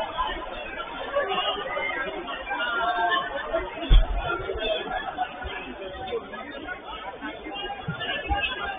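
Players' voices calling out and chattering across a small football pitch. About four seconds in there is a single hard thud of a football being kicked.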